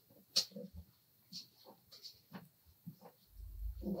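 Faint scattered taps and light clicks of card being handled and lined up on a guillotine-style paper trimmer, with one sharper click about half a second in and a low rumble starting near the end.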